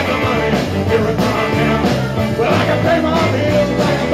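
Live blues-rock band playing: a male singer over two electric guitars, electric bass and a drum kit, with a steady bass line and regular drum hits.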